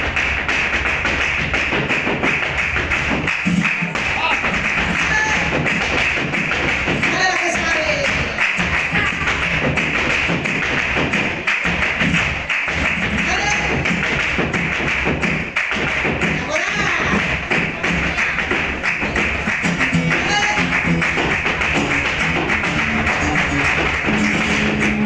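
Live flamenco: a dancer's fast zapateado footwork taps on the stage, with palmas hand-clapping and a singer's voice gliding over it.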